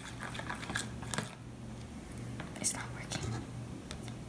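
Sped-up stirring: a metal spoon scraping and clicking in a plastic bowl of glue, in quick irregular ticks, with garbled sped-up voices and a steady low hum underneath.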